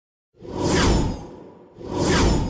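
A whooshing sound effect that swells in and falls in pitch as it fades. A second whoosh begins near the end.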